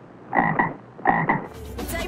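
Frog croaking: two short bursts of rapid croaks, about half a second and a second in. Music with a low bass comes in near the end.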